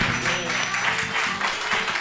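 Live audience applauding: many hands clapping in a dense, even patter right after the band's final chord ends.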